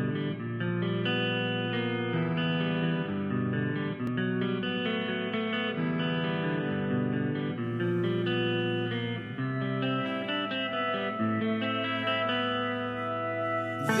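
Electric guitar playing a slow picked melody, its notes ringing into one another.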